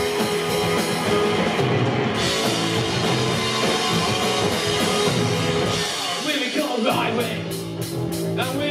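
Punk rock band playing live and loud: distorted electric guitar, bass guitar and drum kit. About six seconds in the bass and drums drop out for under a second, then the full band comes back in.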